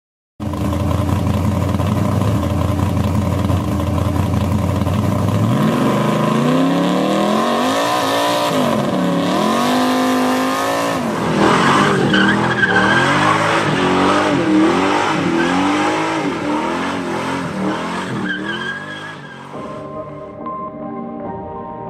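A car engine running at a steady pitch, then revved up and down over and over from about five seconds in, fading near the end.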